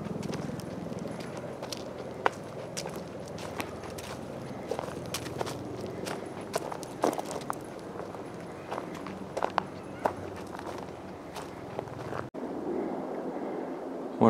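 Footsteps crunching on a leaf- and gravel-strewn dirt trail, an irregular series of light scuffs and clicks over a steady rushing background noise.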